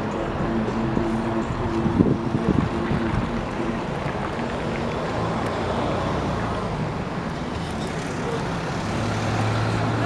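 Street traffic noise: a steady rush of passing vehicles, with a few faint clicks in the first few seconds and a low engine hum coming in near the end.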